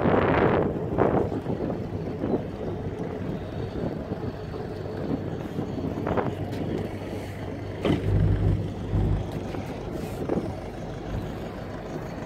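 Old inland barge's engine running steadily, a low hum under wind noise on the microphone. Wind buffets the microphone hard about eight to nine seconds in, and there are a few light knocks.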